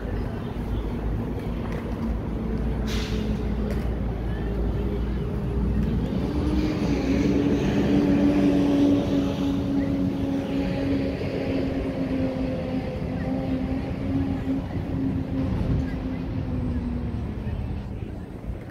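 A motor-vehicle engine running nearby. Its steady drone rises in pitch about six seconds in, holds, and fades out near the end. A low rumble fills the first few seconds.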